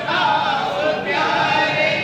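Several men's voices singing a devotional chant together.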